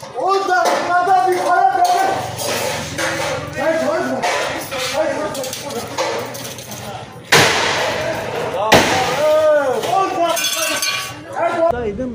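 Glass panels being struck and smashed with a rod, a series of crashes with clinking, shattering glass. The two loudest crashes come a little past halfway, with men shouting throughout.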